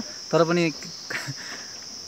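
Insects trilling steadily in one unbroken high-pitched band, heard clearly in a pause after a single spoken word.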